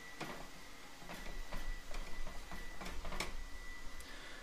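A rag rubbing over the surface of a hot cast iron skillet, spreading a light coat of seasoning oil, with a few light irregular knocks of the pan against the stove grate as it is handled.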